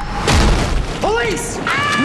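A deep boom with a noisy rush about a quarter second in, then a woman's high, drawn-out voice bending up and down over music.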